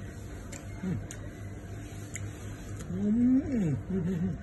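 A man making wordless, closed-mouth vocal sounds while chewing food: a short falling one about a second in, then a longer, louder one near the end that rises and then falls in pitch. A few faint clicks come in between.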